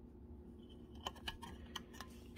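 Low room hum, then about a second in a quick run of light clicks and taps as a printed circuit board is picked up and handled by hand.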